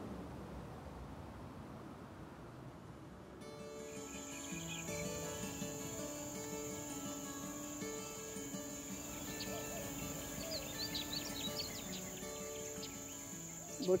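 Soft background music of long held notes. From about three and a half seconds in, a steady high-pitched insect trill joins it, with a few short bird chirps a little after the middle.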